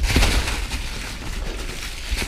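Santa Cruz Hightower LT full-suspension mountain bike rolling over a rocky trail thick with dry leaves: tyres crunching through the leaves, with a steady stream of crackles and knocks from the bike over a low rumble.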